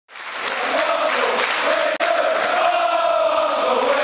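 Large football stadium crowd singing a chant in unison, the massed voices holding a sung note. It fades in at the start and drops out for a moment about two seconds in.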